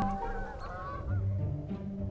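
A flock of geese honking, with wavering calls mostly in the first second, over background music.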